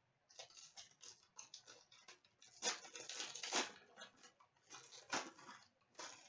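A trading-card pack being opened by hand: the wrapper crinkling and tearing in short, irregular bursts, loudest around the middle and again near the end, as the cards are worked out.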